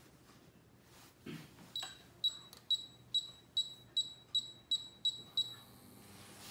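Miele KM5975 induction cooktop's touch controls beeping: a soft knock, then about ten short, high, identical beeps in quick succession, a little faster toward the end, one for each step as the zone's power level is raised from 0 to 9.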